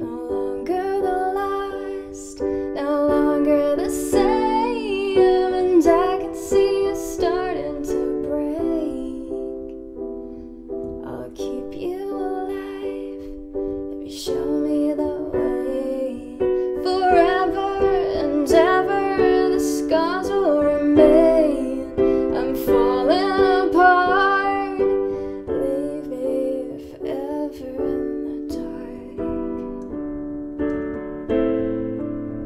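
A woman singing a slow ballad to sustained digital piano chords, in two long vocal phrases with the piano playing on its own between them and near the end.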